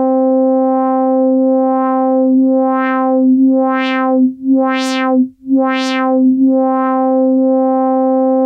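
ASM Hydrasynth holding one note while a triangle-wave LFO sweeps the filter cutoff open and shut about once a second, a wah-like wobble. The sweeps widen as the modulation depth is turned up, brightest about five seconds in, then grow narrower again near the end.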